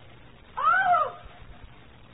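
A single short, high-pitched vocal cry about half a second in, its pitch rising and then falling.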